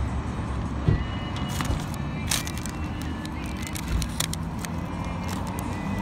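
Steady low rumble of passing road traffic, with a few sharp clicks about two seconds in.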